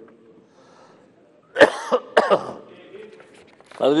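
A person coughing: two sharp coughs about a second and a half and two seconds in, after a short quiet pause, heard over a hall microphone.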